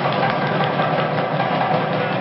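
Loud, steady din of fast festival drumming blended with crowd noise, with no breaks.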